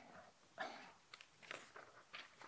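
Near silence: room tone with a faint short rustle about half a second in and a few faint clicks.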